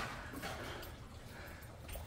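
Quiet background ambience: a faint, even hiss with a soft click right at the start.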